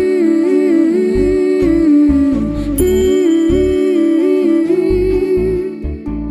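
Background music: a sustained, gliding melody over low drum beats.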